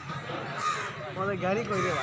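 Indistinct voices of people talking, with a crow cawing.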